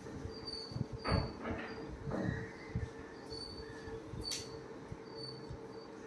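Soft, scattered rustling and handling of gown fabric as sleeves are fitted, over a faint steady hum.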